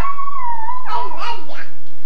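A young child's drawn-out, high-pitched vocalizing that wavers in pitch, breaking into a few short vocal sounds about halfway through.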